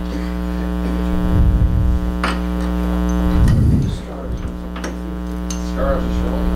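A steady electrical hum holds a single pitch throughout, broken by a few low bumps and sharp clicks.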